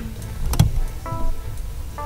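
Low steady rumble of a car heard from inside the cabin, with one sharp click about half a second in. Soft background music notes come in after about a second.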